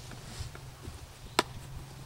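A single sharp click about one and a half seconds in, with a fainter tick before it, as a carrying case is handled and opened.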